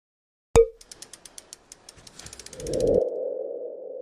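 Logo sting sound effect of a news channel's outro. About half a second in there is a sharp hit, followed by a run of quick ticks at about ten a second. Near the end a whoosh swells and settles into a ringing mid-pitched tone that fades out.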